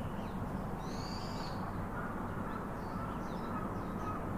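Birds calling: one short, high, arched call about a second in, then a faint, level, held note through the last two seconds, over a steady low background rumble.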